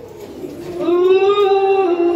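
A singing voice holding one long note, coming in about a second in after a quieter moment.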